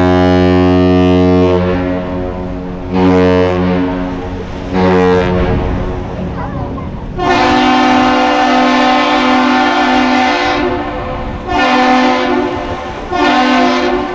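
Captain's salute of one long and two short horn blasts: the Mesabi Miner's low ship's horn ends its long blast and sounds two short ones, then the Duluth Aerial Lift Bridge's higher-pitched horn answers with one long blast and two short.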